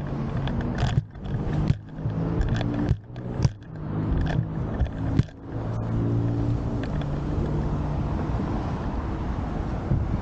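A motor vehicle's engine running steadily close by, its low hum shifting slightly in pitch, with the sound cutting out briefly several times in the first half.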